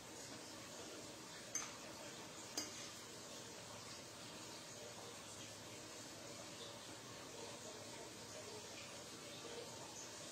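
Two faint clinks of a metal fork against a ceramic plate, a second apart, while pasta is forked up; otherwise quiet room tone.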